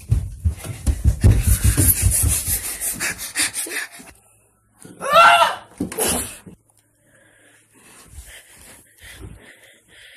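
Someone running with a phone: rapid, evenly spaced thumps of footsteps and panting breath close to the microphone for about four seconds. Then a loud, high shouted "No!" with a shorter burst just after it.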